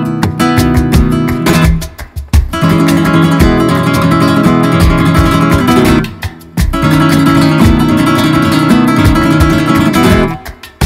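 Solo nylon-string flamenco guitar playing an alegrías falseta, with fast plucked runs and chords. The playing stops abruptly twice, about two seconds in and again about six seconds in, where the strings are damped with the flat of the hand, then sharp strokes pick it up again.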